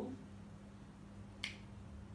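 One sharp click about one and a half seconds in: a marker tip striking a whiteboard while a character is written. It sits over a faint, steady low hum.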